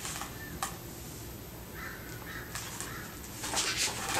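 Sheets of a handmade paper book rustling as its pages are handled and turned, strongest near the end, over a quiet room.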